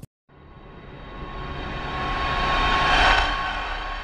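Swelling whoosh sound effect for a logo intro: a rushing noise, like a passing jet, that rises from silence to a peak about three seconds in and then fades, with a thin steady tone running through it.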